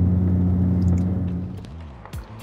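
Toyota Mark II's straight-six engine heard from inside the cabin while driving slowly, a steady low drone that fades away near the end.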